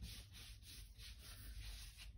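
Ink blending brush rubbing ink through a stencil onto card in quick strokes, a faint scratchy swish about five times a second.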